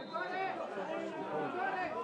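Indistinct chatter of several voices talking at once, without clear words.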